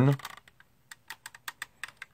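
Plastic Nerf crossbow being handled and turned over, giving a quick run of about a dozen light, irregular clicks and taps.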